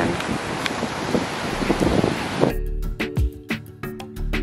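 Steady rush of ocean surf and wind on the microphone. About two and a half seconds in, it cuts abruptly to background music with a steady deep beat and sharp percussion.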